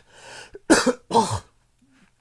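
A man coughing: a breath in, then two harsh coughs about half a second apart.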